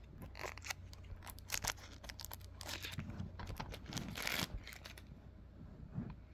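Plastic wrapping on a cassette tape being crinkled and torn by hand, with small clicks and rustles in between and a longer crinkle about four seconds in.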